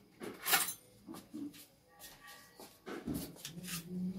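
Kitchenware being handled: a run of sharp clicks and knocks as steel dishes and utensils are moved about, the loudest about half a second in. Near the end a low drawn-out voiced sound begins.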